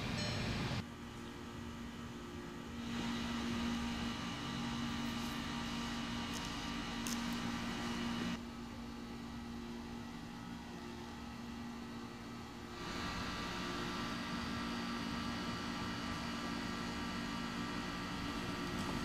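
A steady low hum with faint high steady tones over it, stepping down and back up in level a few times.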